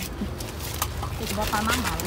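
Quiet outdoor background with a low, steady rumble and a few light clicks, and a faint voice speaking in the second half.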